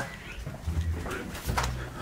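A man's low voice making a few short, quiet sounds, low hums between bouts of laughing.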